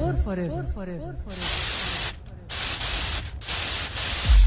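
Radio station jingle effects: a repeating echo of falling tones dies away in the first second, then three bursts of loud white-noise hiss with short gaps between them, leading into dance music.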